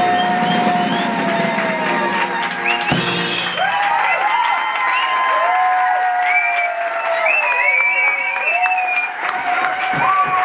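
A small swing band with clarinet ends its tune: a long held final note falling away, closed by a sharp final drum hit about three seconds in. Then the audience cheers, whoops and whistles over applause.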